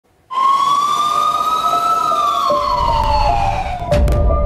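Fire engine siren sounding one slow wail: it starts abruptly, rises in pitch for about two seconds, then falls away. A low rumble comes in about halfway.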